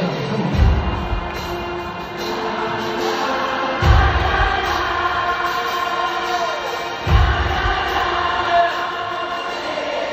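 Stadium crowd singing along in unison with a live rock band, with a deep drum and bass hit about every three seconds.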